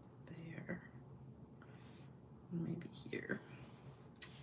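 A woman's voice murmuring quietly under her breath, in two short bits with a pause between.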